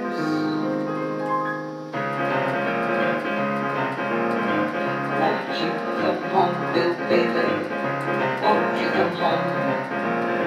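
Electronic keyboard played with a piano sound: held chords at first, then about two seconds in a fuller, busier passage of chords and melody begins.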